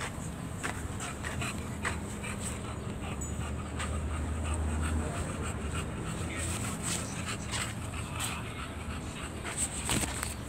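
An English bulldog breathing close to the microphone, with scattered small clicks and a low rumble that swells around the middle.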